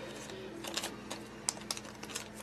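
Faint, irregular light clicks and taps, a few a second, over a steady low hum.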